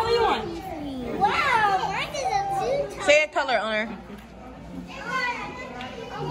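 Young children's high-pitched voices, squealing and babbling without clear words, several times over.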